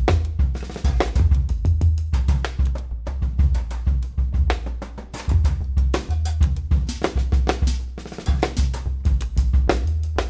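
Drum kit played with sticks in busy, broken patterns of snare, tom and cymbal strikes, over deep sustained low notes from a bass keyboard that step between pitches. Live improvised jazz.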